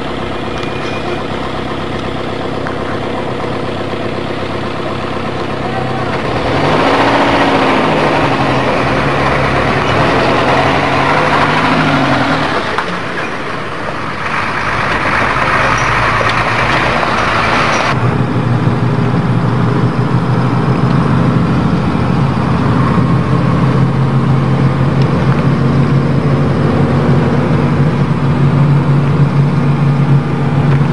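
Vehicle engines running, revving up and down several times in the middle, with a louder rushing stretch, then settling into a steady engine drone.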